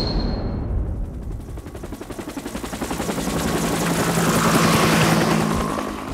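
Rapid automatic gunfire, a dense run of shots that grows louder toward the end, with a low steady drone joining about halfway through.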